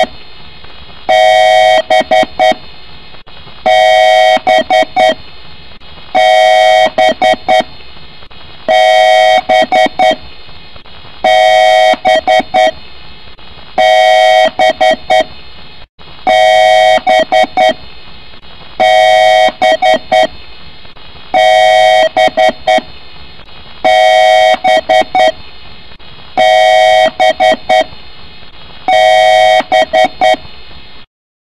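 Loud looping electronic tone: a held, horn-like note about a second long followed by a few short stuttering beeps, repeating about every two and a half seconds.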